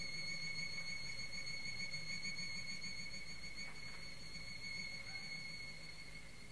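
Solo violin holding one long, very high note with a slight wavering, quiet, over the low hum of the recording.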